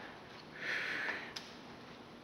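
A man sniffing once through his nose, a short breathy hiss about half a second long, followed by a faint click.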